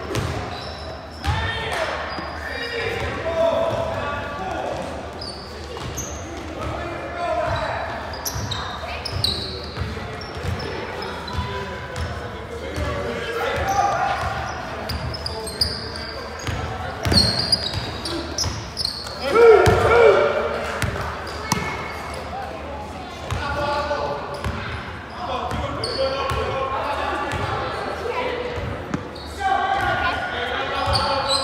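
Basketball game in a gym: a basketball bouncing on the hardwood floor, sneakers squeaking, and players calling out, all echoing in the large hall. The loudest moment is a shout a little before two-thirds of the way through.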